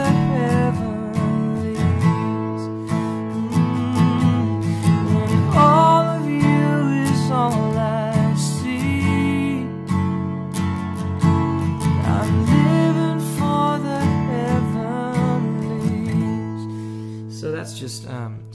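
Steel-string acoustic guitar, capoed at the second fret, strummed through the chorus chords of a worship song, with a man's voice singing the melody over it. The strumming eases and the last chord rings out near the end.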